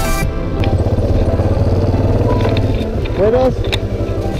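Background music cuts off a moment in, leaving a Yamaha Ténéré 250 motorcycle's single-cylinder engine running steadily at low speed, with a brief spoken call near the end.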